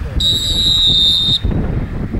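A single steady, high whistle blast from a sports whistle, starting just after the start and lasting about a second, over low rumble on the field.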